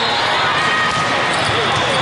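Din of an indoor volleyball hall: many voices talking and calling at once, with volleyballs being hit and bouncing, and short squeaks of sneakers on the court floor, all echoing in a large hall.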